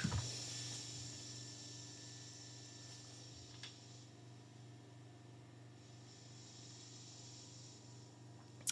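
Faint steady hum and hiss of a guitar amp rig idling with the T-Rex Karma boost pedal in the chain, with one small click about three and a half seconds in. This is the noise the boost adds, which the player sums up as "there's a sound".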